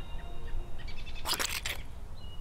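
A shoe stepping into dog poop: one short, wet squelch a little past halfway through. Faint bird chirps sound earlier, over a low steady rumble.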